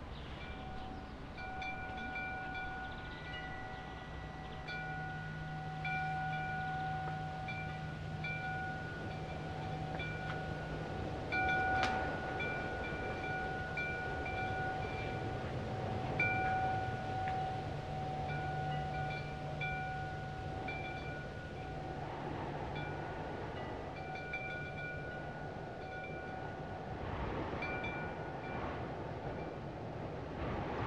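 Several steady, chime-like tones held at fixed pitches, cutting in and out over a low hum, with one sharp click about twelve seconds in.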